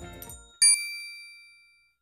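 Background music dying away, then about half a second in a single bright bell-like ding sound effect that rings on and fades out over about a second.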